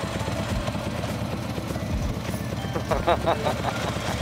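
Harley-Davidson V-twin motorcycle engine running at low speed as the bike rolls in, a steady low exhaust pulse. A brief voice is heard about three seconds in.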